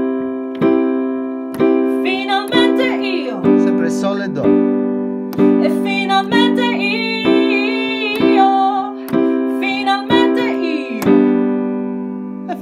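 Digital piano playing a G major chord, struck again about once a second and left to ring between strikes, as the song's ending; a voice sings along over it.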